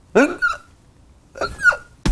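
Two short high yelps about a second and a half apart, each sliding sharply in pitch.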